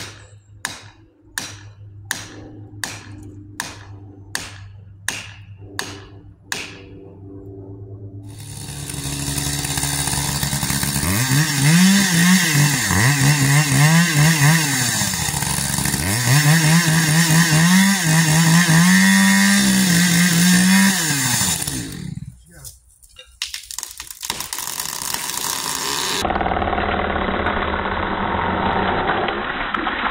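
A run of sharp knocks, about one every 0.6 s, for the first seven seconds. Then a chainsaw starts up at the trunk of a dead black cherry and runs hard, its pitch dipping and recovering a few times as it cuts. It winds down about two-thirds of the way through.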